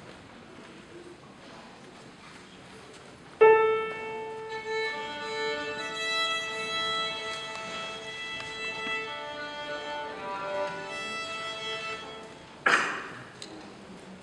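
Violin being tuned: after a sudden loud start about three seconds in, open strings are bowed and held, two notes sounding together and changing every few seconds. A short sharp knock comes near the end.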